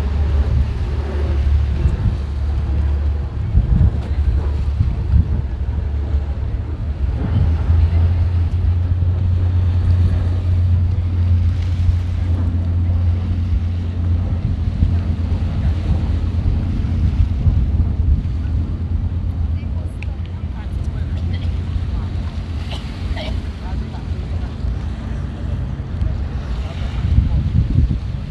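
Steady low drone of a boat's engine heard from aboard, with wind buffeting the microphone.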